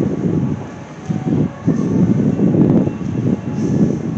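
Loud, low rumble on a handheld camera's microphone, rising and falling in gusts with a brief dip about a second in, as the camera is carried along.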